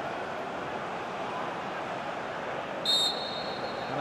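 Steady background noise of the ground, with one short, sharp referee's whistle blast about three seconds in, signalling that the free-kick can be taken.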